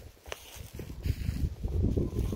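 Footsteps on dry leaf litter and dirt, uneven thuds and scuffs that get louder toward the end, with one sharp click near the start.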